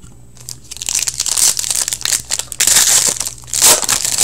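Trading-card pack wrapper being torn open and crinkled by hand, starting about a second in: a run of irregular crackling and rustling.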